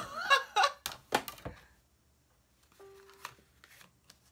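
A woman laughs briefly, then three sharp clicks and knocks as clear plastic cutting plates are lifted off a Big Shot die-cutting machine's platform, followed by faint handling of card and plates.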